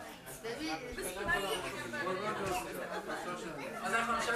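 Speech only: several people talking over one another in a room.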